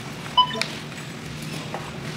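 A checkout barcode scanner gives one short electronic beep about half a second in, followed by a light click, over a steady low hum of the store.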